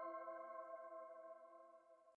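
The fading tail of a logo sting: a bright, bell-like chime with several ringing tones, slowly dying away.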